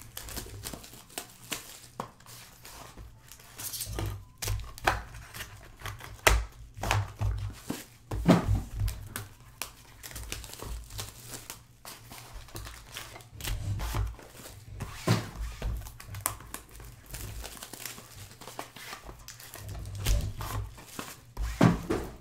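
Foil wrappers of Panini Gold Standard football card packs crinkling as the packs are handled and stacked on a table, with irregular taps and a few louder thumps.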